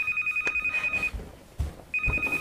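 Electric bell ringing in a rapid trill for about a second, then pressed again near the end: a doorbell being rung repeatedly.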